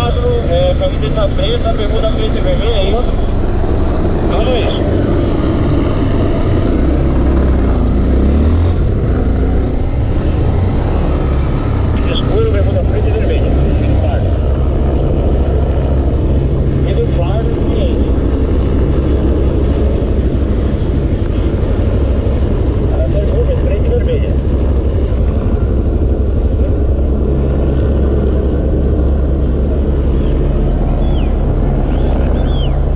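Motorcycle engine running with a steady low drone, first while riding and then held at idle while stopped; voices come through faintly now and then.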